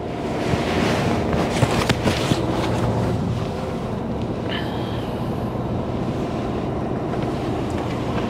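A truck's diesel engine running, heard from inside the cab as the truck rolls slowly and turns: a steady low hum under a noisy rush, with a few short knocks about two seconds in.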